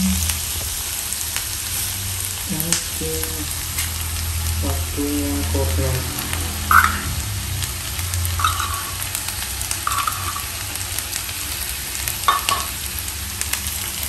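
Chopped onion and garlic sizzling steadily in melted margarine in a nonstick frying pan, with a spatula stirring. From about halfway in, a few short scraping squeaks as a metal spoon digs corned beef out of its can and into the pan.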